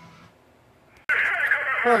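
Faint room tone for about a second, then a sudden loud hiss of radio static from a software-defined receiver (RANverter up-converter with an RTL-SDR dongle) playing through a laptop speaker, the hiss held within a narrow upper-midrange band.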